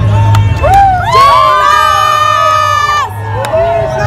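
A group of young people cheering and yelling together: several voices rise into long held shouts about a second in, hold for about two seconds, then fall away into shorter calls.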